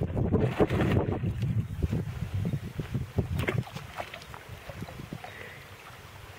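A Boxer/Basset Hound mix dog paddling and splashing through pond water, the splashes growing fainter as it swims away.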